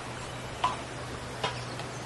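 Kitchen knife cutting raw beef on a wooden cutting board, giving two sharp knocks about a second apart as the blade meets the board, over a steady low hum.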